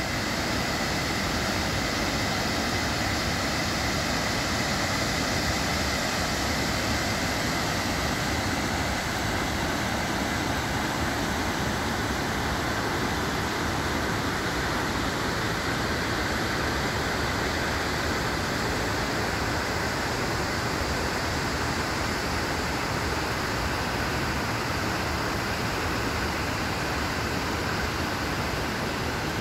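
Waterfall and river rapids running over rock: a steady, even rush of water.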